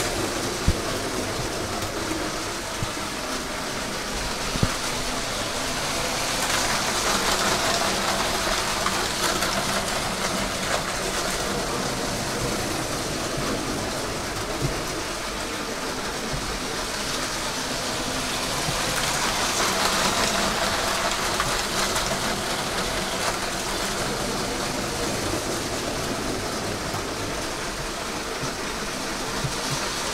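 Lego City passenger train (set 60197), its two Powered Up train motors driven together, running around plastic track with a steady whirring and rolling noise. The noise swells twice as the train passes close by.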